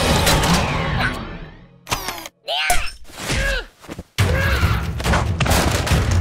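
Cartoon fight sound effects: a fast run of thuds and clattering that fades away about two seconds in, then a few short squealing cries that glide up and down, then loud rapid clattering and thuds again from about four seconds in.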